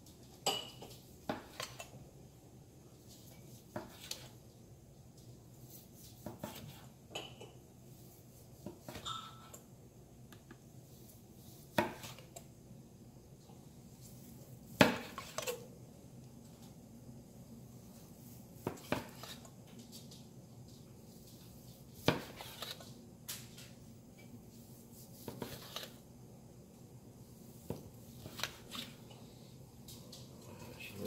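A long slicing knife tapping and clicking against a plastic cutting board as a smoked brisket is sliced: a dozen or so short, sharp knocks at uneven intervals, the loudest near the middle.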